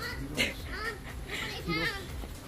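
Young children's high-pitched voices calling out and squealing at play, several short calls in a row.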